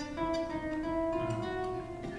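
A short melodic phrase of plucked string notes, a handful of notes struck in turn and left ringing into one another.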